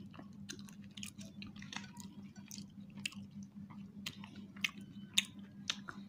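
People chewing and biting into pizza close to the microphone: a string of short, sharp mouth clicks and smacks over a steady low hum.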